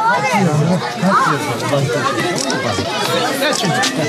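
Chatter of many children's voices talking over one another, with no single clear speaker.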